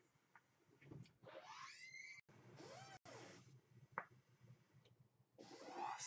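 Faint airflow of a vape hit: a long draw through a dripping atomizer on a box mod, with a slight whistle, then the vapour blown out, between about one and three and a half seconds in. A faint click follows a little later.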